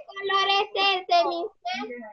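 A child's high-pitched voice speaking in a sing-song way, a few drawn-out syllables in a row.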